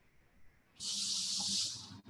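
A loud, high-pitched hiss lasting about a second, starting near the middle and stopping just before the end.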